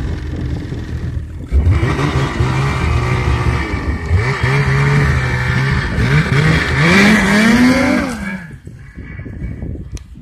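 Ski-Doo snowmobile engine running close by and revving, its pitch rising and falling in repeated blips, then climbing highest about seven to eight seconds in before it drops away.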